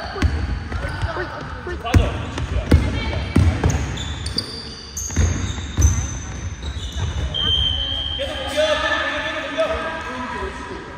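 Basketball bouncing on a wooden gym floor during play, a handful of irregular thuds, with short high squeaks of sneakers on the floor and players calling out, a voice louder near the end.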